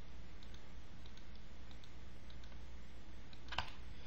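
A few faint computer mouse clicks, with one sharper click near the end, over a low steady hum.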